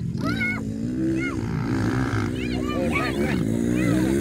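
Motocross dirt bike engines running and revving on the track, their pitch wavering, with people's voices calling out over them.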